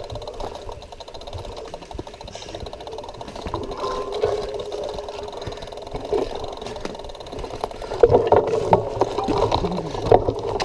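Mountain bikes rattling over a dirt forest trail, heard from a camera mounted on the bike: a steady fast ticking and clatter of frame, chain and mount. It gets louder near the end, with sharper knocks as the bike goes over bumps.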